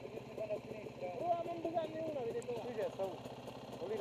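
Indistinct talking over a dirt bike's engine idling steadily underneath.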